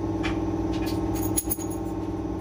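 A few light metallic clinks of engine parts being handled, over a steady droning hum.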